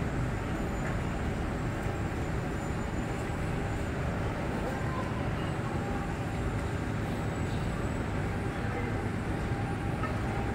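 Steady quayside rumble and hiss beside a moored passenger ship, heaviest in the low range, with a faint steady hum.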